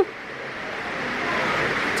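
Steady rushing background noise, growing slowly louder, with no distinct events in it.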